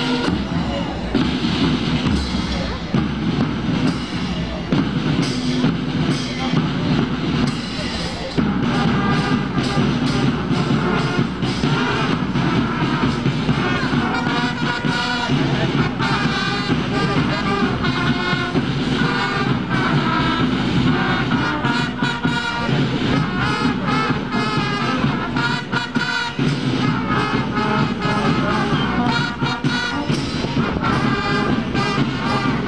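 School marching brass band playing: snare and bass drums beat a steady march while trumpets and saxophone carry the melody. The band gets louder about eight seconds in.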